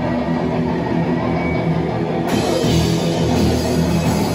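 Loud live heavy band playing in a small room: distorted electric guitars, bass and a drum kit. About two seconds in the sound turns suddenly fuller and brighter as the band plays harder.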